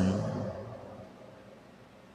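The echo of a man's voice dying away in a large, reverberant cathedral. It fades over about a second and a half to faint room tone.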